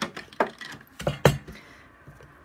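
Several sharp clacks and knocks as a clear acrylic stamp block is picked up and handled on a desk, the loudest a little past a second in.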